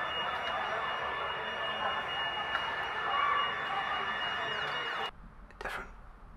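Street ambience at a burning building: a continuous rushing noise with a steady high-pitched tone over it, cutting off suddenly about five seconds in.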